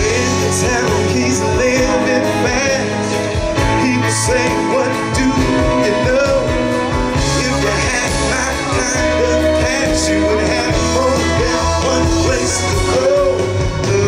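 Live amplified band of fiddle, electric guitar, banjo, keyboards and drums playing an instrumental passage between verses, over a steady bass pulse, with a lead line that bends and wavers in pitch.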